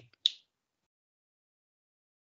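A single sharp finger snap about a quarter second in, given on the count of three of a hypnotist's command.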